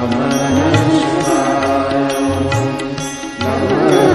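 Indian devotional music: a Shiva chant sung over a melody and a steady drum beat.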